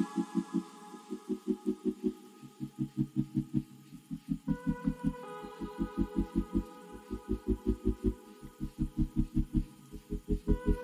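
Background music with a fast, steady pulsing bass beat under held synth-like tones that shift to a new chord about halfway through.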